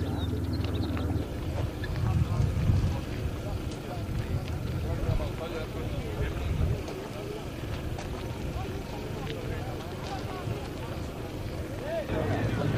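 Indistinct voices of people talking, over an uneven low rumble.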